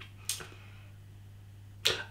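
Two short, sharp mouth sounds, a lip smack or quick breath, from a man pausing between remarks: one about a third of a second in and a stronger one just before the end. A steady low hum sits underneath.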